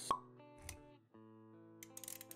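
Intro music with animation sound effects: a sharp pop just after the start, a softer hit a little later, then sustained notes and light clicks near the end.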